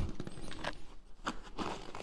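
Soft rustling and scraping of a sling bag's fabric as a smartphone is slid into its front pocket, with a few faint clicks.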